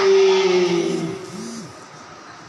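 A man's voice through a microphone holding one long, slightly falling note that fades away after about a second and a half.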